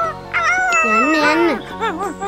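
A cartoon dog's voiced howl and whimpers: one long wavering call, then short rising-and-falling whines near the end, over a steady background music bed.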